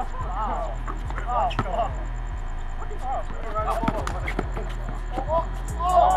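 Basketball game sounds: a few sharp thuds of a ball striking the court or backboard, mixed with players' short scattered shouts, over a steady low hum.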